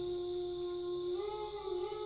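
A man humming one long, steady note that steps slightly higher in pitch about a second in.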